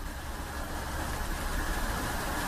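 Steady background noise: a low rumble under an even hiss, with no distinct event.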